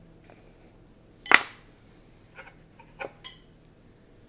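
Jar of Nutella being opened by hand: a sharp knock about a second in, then a few light clicks of the plastic lid being handled and set down.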